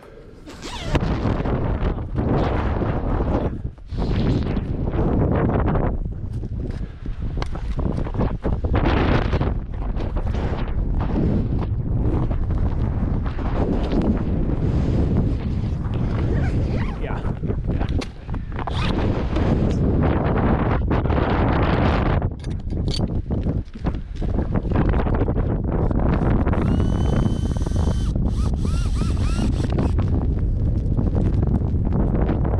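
Nylon fabric of an Eskimo pop-up ice-fishing shelter rustling and flapping in irregular bursts as gloved hands grab and pull it down, with wind rumbling on the microphone.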